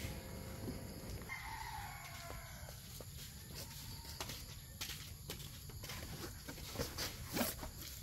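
Flattened cardboard sheets slid and handled in a car's cargo area, with a few sharp knocks and rustles in the second half. A rooster crows faintly about a second in.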